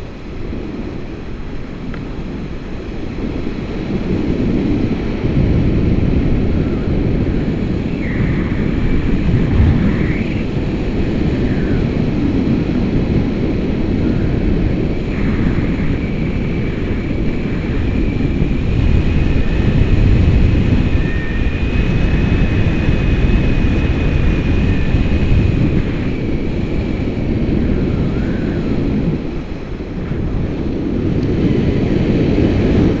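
Wind from a paraglider's flight buffeting the camera microphone: a loud, steady low rumble that grows stronger a few seconds in. A faint high whistling tone comes and goes through the middle.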